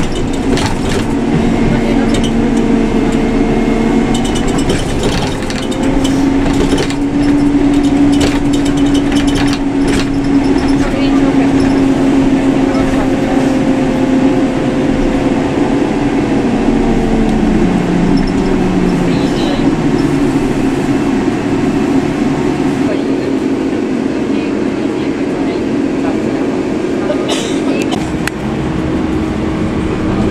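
Interior of a moving electric tram: a steady rumble of running noise under whining traction-motor tones that shift in pitch, one gliding down about 17 to 19 seconds in as the tram slows, then settling into a steady tone again.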